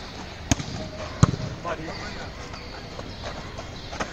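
Two sharp slaps of a volleyball being hit in a rally, about three-quarters of a second apart, the second the louder.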